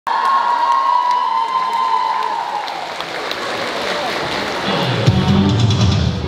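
Audience applauding and cheering, with one long high note held for the first couple of seconds before it slides down. About five seconds in, recorded backing music with a bass-heavy beat starts.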